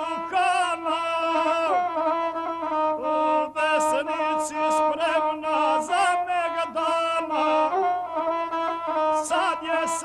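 A male guslar sings an epic song and accompanies himself on the gusle, a single-string bowed folk fiddle. The bowed string and the voice keep up one continuous, wavering melodic line.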